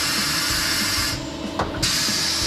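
Coats 7060EX tire changer running on compressed air: a steady hiss of air that cuts off for about half a second past the middle, then starts again, over a low steady hum.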